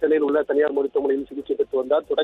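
Speech: a news reporter's narration in Tamil.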